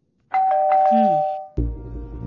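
Two-tone ding-dong doorbell chime, a higher note then a lower one, ringing out for about a second. Music with a deep bass comes in near the end.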